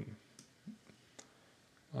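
A few faint, short computer mouse clicks, spread over about a second.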